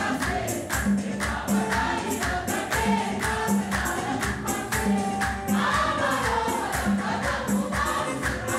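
A choir singing over a steady percussion beat of drum and tambourine-like jingles.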